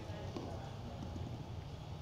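A pause in speech: faint, steady room tone of a large auditorium with a low background hum.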